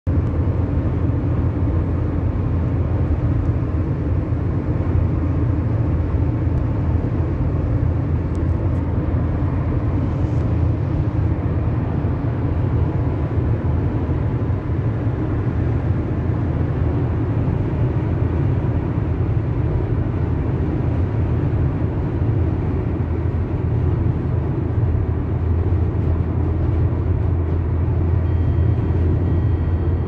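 Steady low rumble of a car cruising at highway speed, heard from inside the cabin.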